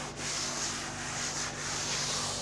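A cloth rubbing chalk off a blackboard in several repeated wiping strokes, a dry rasp that swells and fades with each stroke.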